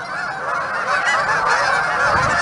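A large flock of geese on the water squawking and honking, many overlapping calls in a dense, continuous chorus that grows a little louder.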